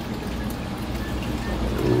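Steady trickle of running water over a low hum, typical of a reef aquarium's running pumps and overflow.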